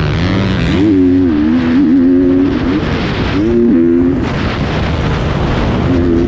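GasGas 250 motocross bike engine heard from the rider's helmet, revving up and holding under throttle, dropping off, then pulling hard again as the rider works the throttle around the dirt track, with wind rushing over the helmet.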